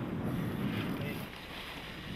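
Quiet, steady wind noise on the microphone, easing off a little in the second half.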